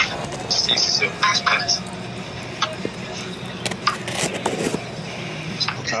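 A taped cardboard shipping box being opened by hand: a series of short ripping and scraping noises from the packing tape and cardboard flaps.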